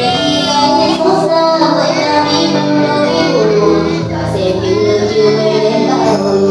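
A woman singing a song into a handheld microphone over a karaoke backing track, her amplified voice holding notes with a wavering vibrato.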